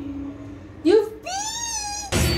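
A high-pitched, meow-like whining cry: a short rising yelp just under a second in, then a longer call that rises and falls slightly.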